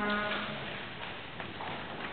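A brief hummed "mm" in a woman's voice at the start, held for about half a second, then quiet room tone.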